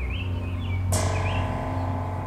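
Low, sustained film-score drone with short bird chirps over it; a brighter musical layer comes in sharply about halfway through.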